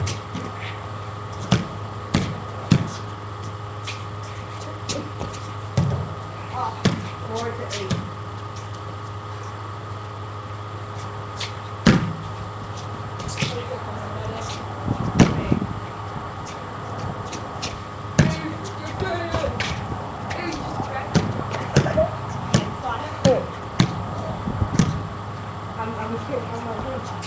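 A small ball bouncing on hard ground in sharp, irregularly spaced knocks, with no steady dribbling rhythm, and faint voices of the players between the bounces.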